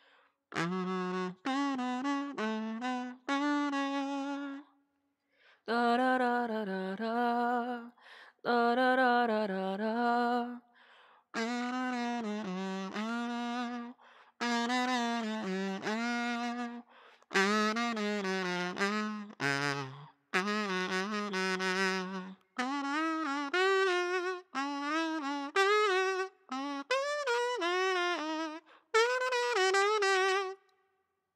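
Aluminium kazoo played by humming into it, its plastic membrane buzzing: a melody in short phrases with vibrato and slides between notes, with brief gaps between phrases and a longer pause about five seconds in.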